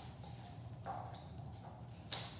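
Field Spaniel's claws clicking faintly on a slate tile floor as she moves about, a few light taps with the clearest about a second in, over a steady low hum.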